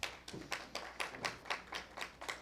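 Light applause from a small audience: a few people clapping, about four claps a second.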